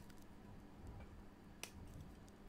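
Near silence, with one short, faint click about one and a half seconds in as the watch and its paper hang tag are handled.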